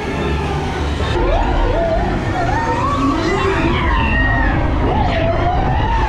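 A dark ride's show soundtrack: slow, wavering siren-like wails rising and falling over a steady low rumble, with voices mixed in.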